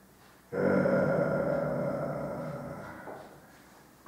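A man's long, drawn-out hesitation sound, a held 'hmmm' while thinking, starting suddenly about half a second in and fading away over about three seconds.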